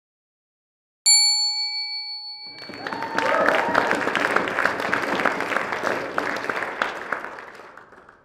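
A single bright bell-like chime struck about a second in, ringing and dying away. From about two and a half seconds, audience applause, the many claps fading out near the end.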